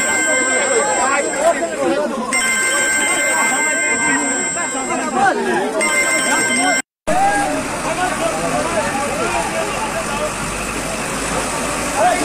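A crowd of people shouting and talking over one another. A steady electronic ringing tone sounds in three stretches during the first half. The sound cuts out briefly at about seven seconds, then the voices go on.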